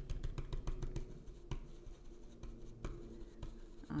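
Stencil brush pounced on a stencil laid over a wooden sign board, a quick run of soft dabbing taps that thins to a few scattered taps after about a second and a half.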